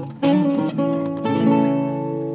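Acoustic guitar played solo: plucked chords struck about a quarter second in and again past the middle, ringing on, as the introduction to a sung worship song.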